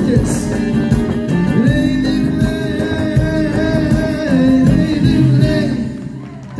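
Live band music played through a PA system, with a man singing over keyboard and other instruments.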